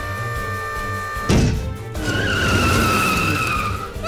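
Cartoon sound effects over background music: a heavy thump about a second in, then a tyre screech lasting nearly two seconds, falling slightly in pitch.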